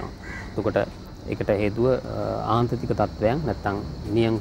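A crow caws about two seconds in, over a man speaking.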